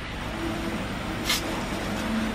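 A single light knock about a second in as a stainless steel mixing bowl is set down on a table, over a steady low background rumble.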